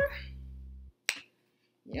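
A single sharp click a little over a second in, after a low steady hum cuts off, in an otherwise near-silent gap.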